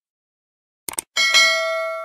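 Subscribe-button animation sound effect: a quick double click about a second in, then a notification bell chime of several bright tones that rings out and slowly fades.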